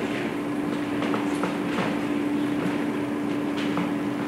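Steady low hum and room noise, with a few faint small knocks.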